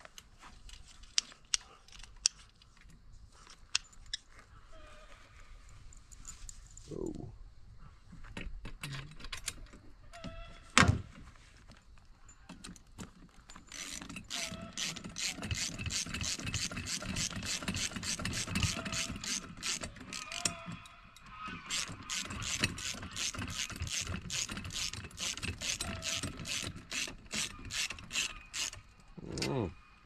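Socket ratchet wrench clicking as bolts on the seat bracket are tightened: scattered clicks and a single knock at first, then fast runs of ratchet clicks through the second half. The socket is too shallow to get a good bite on the long bolts.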